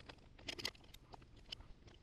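Faint clicks and light rattles of small metal parts and tools being handled at a power supply's front panel: a quick cluster of clicks about half a second in, then a few single ticks.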